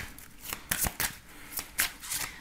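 A deck of oracle cards being shuffled by hand: an irregular run of crisp card snaps and slaps.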